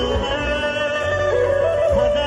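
A male singer singing live into a microphone through a PA system over backing music. He holds one long ornamented note that steps up in pitch near the end, over a steady bass line.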